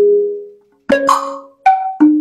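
Burmese pat waing drum circle played by hand: the ring of one tuned drum dies away, then after a short gap two single strokes on other tuned drums, the second higher in pitch, each ringing briefly.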